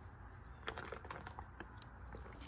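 Faint, scattered small clicks and light taps, several in two seconds.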